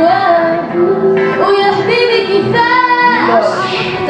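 A live band playing with a woman singing over it, holding long notes that bend in pitch.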